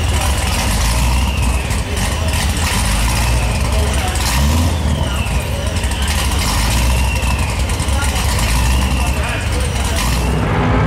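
Procharger-supercharged Corvette C7 Z06 V8 running steadily, with voices in the background.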